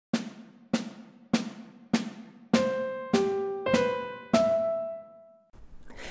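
A snare drum counts in one bar of four even beats, a little under two a second. The demonstration bar then plays over continuing snare beats: four melody notes, C, G, B and a held E, with a quick grace note (acciaccatura) crushed in just before the B. The grace note is placed before beat three, not on it.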